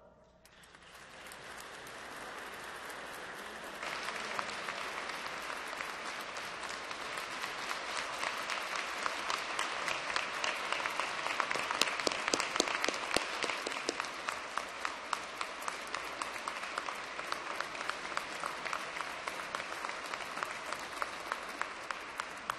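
Audience applauding. The applause builds over the first few seconds, is loudest around the middle, and eases off slightly toward the end.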